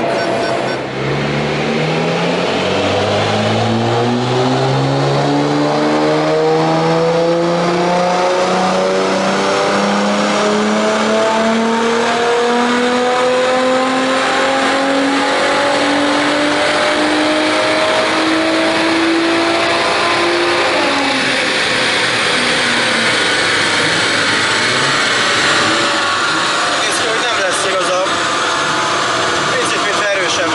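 Tuned Nissan GT-R's twin-turbo 3.8-litre V6, with an aftermarket exhaust, at full throttle on a chassis dynamometer: the revs climb steadily in one long, unbroken pull for about twenty seconds, then the throttle closes and the revs fall away as the rollers run down.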